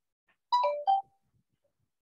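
A short electronic chime about half a second in: a note that steps down to a lower one, then a brief third note, all over within half a second.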